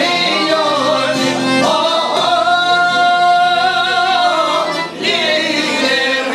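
Albanian folk song: a man singing, accompanied by plucked long-necked lutes, holding one long note through the middle.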